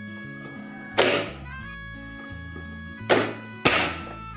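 Three sharp thunks of a push-down vegetable chopper's lid slammed shut, forcing pieces of bottle gourd through its blade grid: one about a second in and two close together near the end. Steady background music runs underneath.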